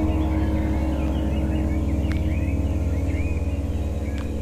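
A held chord of ambient background music slowly fading, with birds chirping over it.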